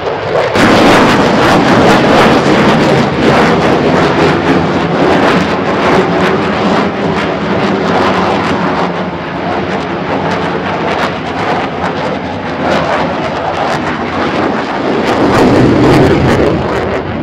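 JASDF F-15J Eagle fighter's twin turbofan engines, loud and crackling as the jet manoeuvres overhead. The noise is loudest in the first few seconds, eases in the middle and swells again near the end.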